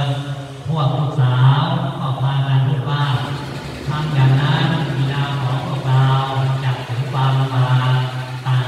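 A monk's low male voice chanting in a steady, nearly level monotone, phrase after phrase with short pauses. This is the Pali recitation style of a Thai sermon rather than ordinary speech.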